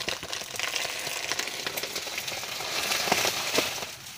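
Dry, dead banana leaves crackling and rustling as someone pushes through them, getting louder towards the end, with a couple of sharper snaps about three seconds in.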